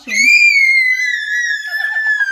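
A small child's long, high-pitched gleeful scream, held as one unbroken shriek that rises slightly at the start and then slowly sinks in pitch. Another voice joins underneath near the end.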